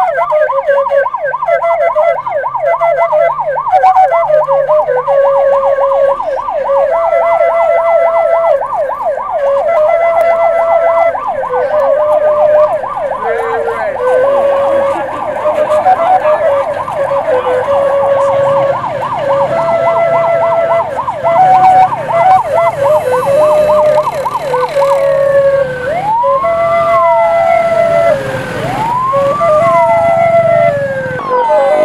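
Vehicle siren sounding a fast repeating yelp, with a second pattern of held electronic notes stepping up and down in pitch over it; from about 25 seconds in, the siren changes to a slow rising and falling wail.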